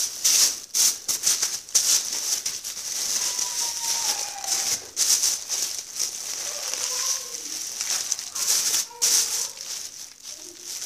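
Thin plastic bags rustling and crinkling in irregular bursts as they are handled and wrapped around vegetables.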